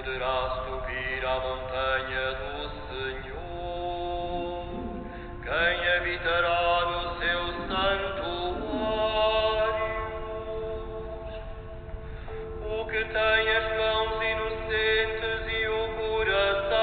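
Sung liturgical music during a Catholic Mass: a chant-like melody in phrases with long held notes.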